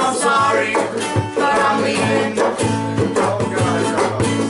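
Acoustic string band playing an upbeat song: banjo and mandolin strummed over acoustic guitar and a steady drum beat, with voices singing along.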